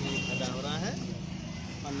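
A motor vehicle's engine briefly rising in pitch in the background, over a steady low hum.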